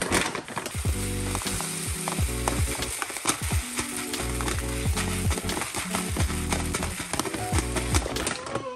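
Dry rice grains pouring from a bag into a plastic storage container: a steady rattling hiss of many small grain clicks. Background music with a beat plays underneath.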